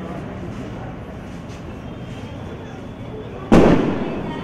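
A single sharp firecracker bang near the end, loud and fading quickly, over a steady background murmur of voices.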